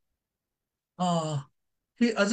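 A man's voice: after about a second of silence, a single short syllable, like a hesitation sound, lasting about half a second.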